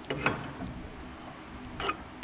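Metal clinks and clicks from a power steering pulley installer tool being turned by hand on the pump shaft while pressing the pulley on. A few sharp clinks come just after the start and another pair about two seconds in.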